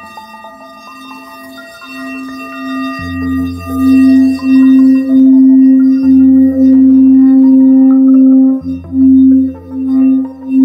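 A large frosted crystal singing bowl played by rubbing a wand around its rim. The tone builds over the first few seconds into a loud, steady, ringing hum that throbs and wavers, dipping briefly near the end.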